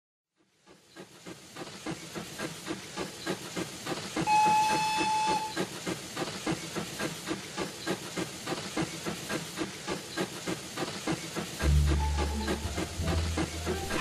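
Recording of a full-size steam locomotive running, fading in to steady rhythmic exhaust chuffs with hiss. About four seconds in it gives one whistle blast of just over a second. A low steady drone joins near the end.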